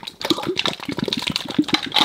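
Thick slime squelching and popping as it is squeezed out of a soft plastic bottle and pools on a hard floor, a run of small irregular clicks and squishes.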